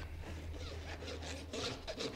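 Farrier's flat hoof rasp filing the hoof wall of a shod horse's front foot in short, quickly repeated scraping strokes. The rasp is taking off the bit of wall that stands over the front of the new shoe, finishing the foot flush with it.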